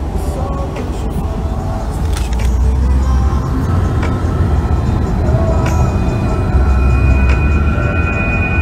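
Steady low rumble of road and wind noise inside the cabin of a car driving at highway speed.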